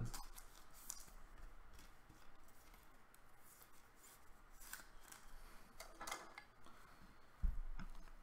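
Plastic card sleeve and rigid top loader rubbing and scraping as a sleeved trading card is worked into the top loader, with a few faint clicks and a low thump near the end.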